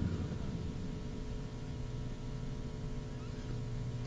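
Steady low electrical hum with faint background hiss, no voice: the broadcast line's noise floor.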